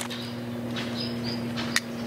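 Outdoor ambience: a steady low hum with a few faint, high, short bird chirps about a second in, and a single sharp click near the end.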